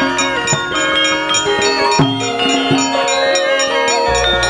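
Javanese gamelan music: bronze metallophones and gong-chimes ringing in many steady tones, with a few sharp strikes about half a second, two seconds and nearly three seconds in.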